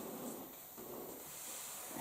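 Quiet room tone: a faint steady hiss with no distinct event.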